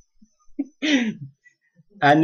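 A man clearing his throat once, a short falling rasp about a second into a pause in his speech.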